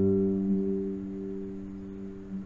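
Nylon-string classical guitar chord left ringing, its notes held and slowly fading with no new note plucked.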